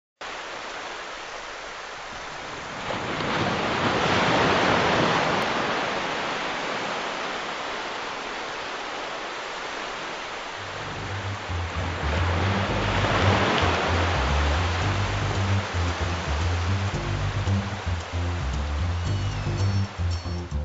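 Ocean surf, two waves swelling and breaking, with music coming in about halfway through as a line of low bass notes under the waves.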